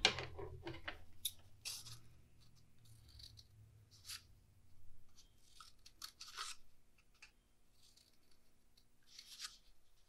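Scissors snipping slits into a cardboard toilet paper tube: short, crisp cuts at irregular intervals, a second or two apart, with pauses between them.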